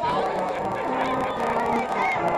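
A marching band playing a tune, held wind notes over drum strikes, with crowd noise underneath.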